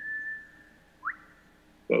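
A high whistle: one held note, then a quick upward-gliding whistle about a second in.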